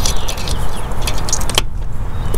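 Wind rumbling on the microphone, with a few light clicks and rattles of a hand handling parts on the powerhead of a stationary Mercury four-stroke outboard.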